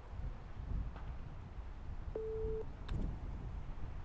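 A single short electronic beep of about half a second from a putting-stroke analysis sensor, then a sharp click of the putter striking the golf ball about a second later, over a low rumble.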